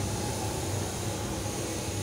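Steady background noise: a low hum with an even hiss over it, with no distinct knocks or clicks.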